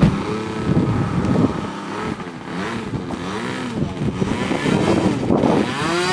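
Engine of a radio-controlled model airplane, its pitch rising and falling several times as it revs up and down.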